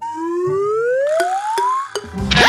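A comic whistle-like sound effect: one tone sliding steadily upward in pitch for nearly two seconds, with a few faint clicks behind it.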